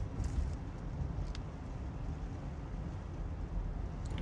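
Steady low rumble of a car heard from inside the cabin, engine and road noise, with a faint click about a second in.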